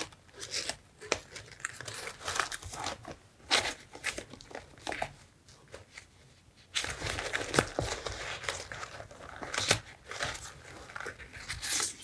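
Stacks of vintage paper ephemera and card being rifled through by hand in a box: dry paper rustling and crinkling in irregular strokes, with a lull about halfway through before denser rustling resumes.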